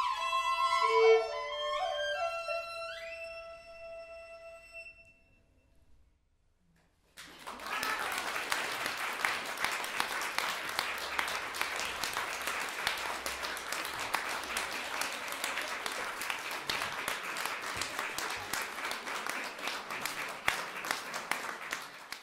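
Violin and xiao flute playing the final notes of a piece, which fade out over about five seconds. After a brief silence, audience applause starts and runs on steadily.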